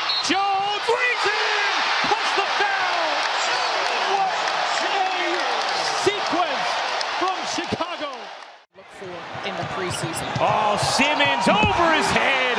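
Basketball game court sound: crowd noise in the arena, with sneakers squeaking on the hardwood floor and a ball bouncing. The sound drops out for a moment about three-quarters of the way through, then similar court and crowd sound carries on.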